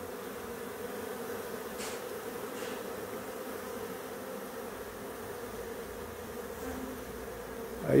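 A swarm of Africanized honeybees buzzing steadily as it crowds the entrance of a hive box and moves in to settle: an even, unbroken hum.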